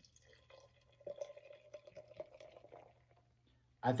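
Hazy IPA poured from a can into a glass: faint glugging and splashing of the beer filling the glass, easing off about three seconds in.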